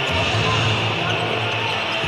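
Basketball arena ambience: music playing over a steady crowd din during live play.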